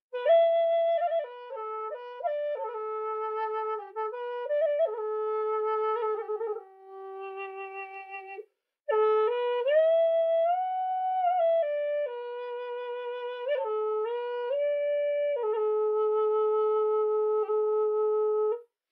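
Bamboo Native American-style flute (zen pimak) playing a slow melody of held notes in its lower octave, with notes sliding up and down. The melody comes in two phrases, with a breath break about eight and a half seconds in, and it ends on a long held low note.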